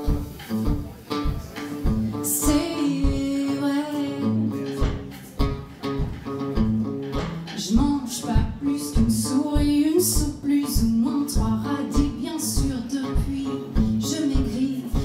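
A live soul band playing: drums and bass keeping a steady beat under guitar, with a woman's sung lines over it.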